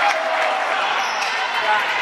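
Basketball game in a gym: a mix of spectators' and players' voices with sneakers squeaking on the wooden floor and a basketball bouncing.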